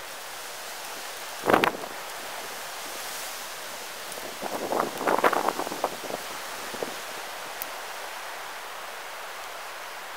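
Wind blowing steadily across the microphone, with clothing rustling as layers are pulled off. There is one loud rustle about a second and a half in, and a cluster of shorter rustles around five seconds.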